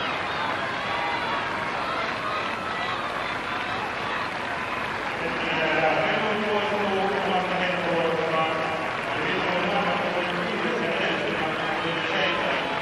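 Steady crowd noise filling a large athletics stadium. From about halfway, a man's voice echoes over it.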